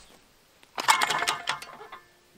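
Spring-loaded clay target thrower firing, released by a foot-pedal switch driving a 12-volt central-locking actuator: a sharp mechanical clack about ¾ of a second in as the arm swings, then about a second of rattling and metallic ringing that dies away.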